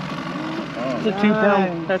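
A boat motor running steadily at trolling speed, a low even hum, with a man talking over it from about a second in.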